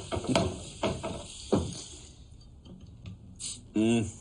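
Short vocal sounds from a man in the first second and a half, then small clicks and a brief crackle near the end as the screw cap of a small glass minibar bottle is twisted open.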